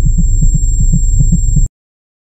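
Loud, low rumbling drone pulsing several times a second, with a steady high-pitched whine over it: a dramatic sound effect that cuts off suddenly near the end.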